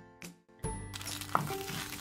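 Jingly background music fades out, and about half a second in a pan of sweetened mung beans starts sizzling as a spatula stirs and scrapes the thick, nearly dry paste.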